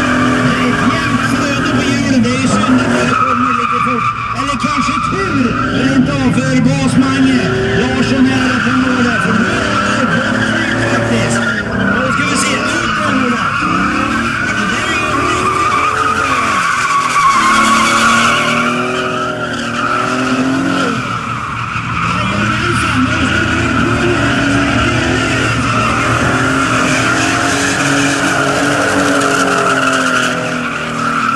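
A Ford Sierra drift car's engine revving up and down hard as it slides sideways, with its rear tyres skidding and squealing on the tarmac.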